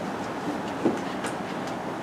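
Steady room noise with no speech, broken by a soft knock just under a second in and a faint tick soon after.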